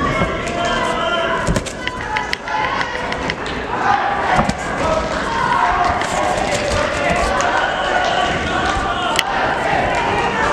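Gloved punches and kicks landing during a kickboxing exchange, heard as a run of sharp slaps and thuds with feet thumping on the ring canvas, under a steady layer of people shouting and calling out, which thickens about four seconds in.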